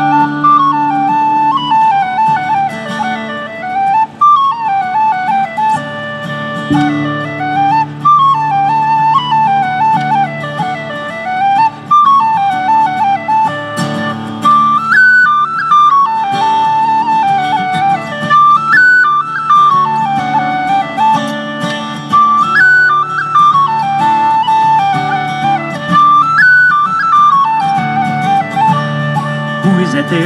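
Tin whistle playing a quick, ornamented traditional Irish tune over strummed acoustic guitar and a steady low accompaniment, in repeating phrases about four seconds long.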